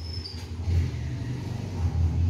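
A low, uneven rumble, with a brief thin squeak of a marker on a whiteboard at the very start.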